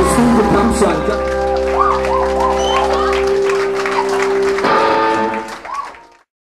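Rock music with guitar chords held steady and a wavering, bending high note over them; the bass drops out about three and a half seconds in, and the sound fades away at the end.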